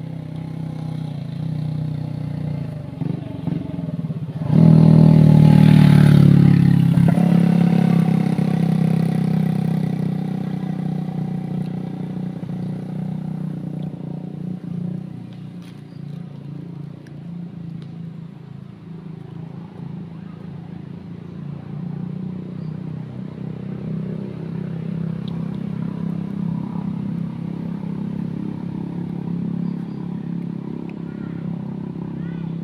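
A motor vehicle engine running steadily nearby. About four and a half seconds in, a much louder vehicle sound starts suddenly and fades away over the next several seconds.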